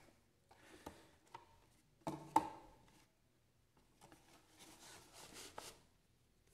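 Cardboard box-set packaging being handled and slid over a wooden tabletop: faint rubbing and light knocks, with a louder knock about two seconds in and a soft rustling slide near the end.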